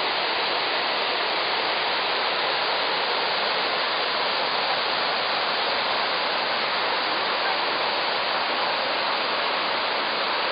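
Krka River waterfalls rushing: a steady, even noise of water falling over the cascades.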